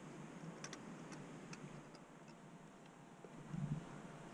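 Faint, light metallic clicks and ticks of a feeler gauge being worked in around the cam lobe and rocker arm of a Husqvarna 701's cylinder head, with a soft low bump near the end.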